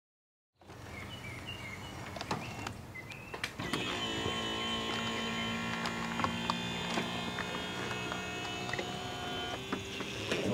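Electric power soft top of a 2001 Porsche 911 Carrera Cabriolet (996) closing: a few light clicks, then from about three and a half seconds in a steady electric motor whine with several held tones.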